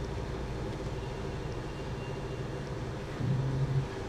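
Steady low background hum with faint steady tones, and a brief low tone rising out of it shortly before the end.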